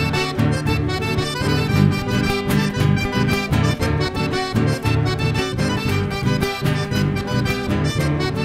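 Chamamé band playing an instrumental passage, with the accordion leading over strummed acoustic guitars and bass guitar in a steady, even rhythm.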